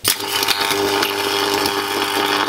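A microwave-oven transformer switched on with a sharp click, then a loud, steady electrical buzz with crackle as its high-voltage output arcs at the wire and metal pieces on top.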